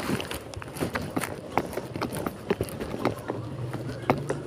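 Footsteps on paved ground: a quick, uneven run of sharp clicks, about two or three a second.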